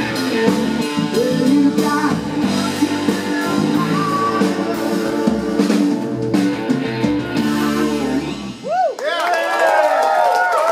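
Live rock band of electric guitar, bass and drums playing the last bars of a song, which ends about eight and a half seconds in. Voices follow with rising and falling shouts.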